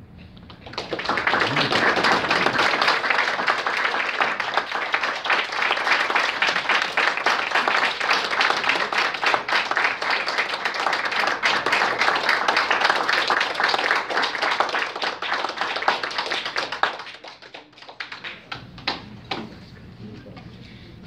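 A small audience applauding, starting about a second in and dying away to a few last claps near the end.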